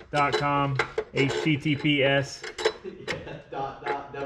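Man talking, then light metallic clinks and taps from about halfway in as a car battery's J-hook hold-down and bracket are fitted by hand.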